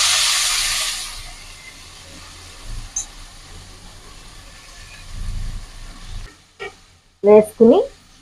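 Chopped coriander leaves hitting hot oil in a metal pan: a loud sizzle right at the start that dies down over a second or two to a low, steady sizzle.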